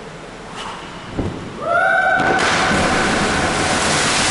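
Jump off a 10-metre diving platform holding a fabric flag as a parachute: a soft thump about a second in, then from about halfway a loud rush of air with a steady whistling tone over it.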